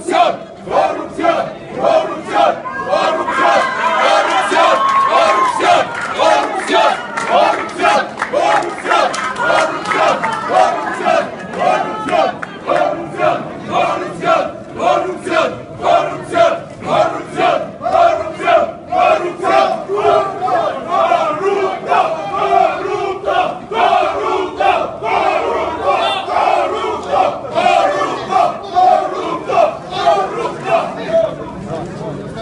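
A crowd of protesters loudly chanting a slogan in unison, the shouts coming in a steady, rhythmic beat.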